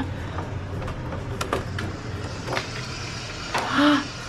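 Steady low rumble of a handheld camera being carried through a doorway, with several sharp clicks and knocks and a short pitched sound near the end.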